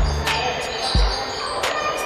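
A basketball bouncing on a wooden gym floor, two heavy thuds about a second apart, with music and voices in the background.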